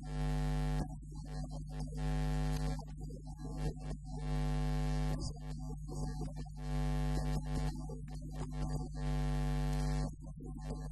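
A man's voice chanting a xassida in about six drawn-out, level notes of roughly a second each, with short breaks between them, over a loud steady electrical mains hum.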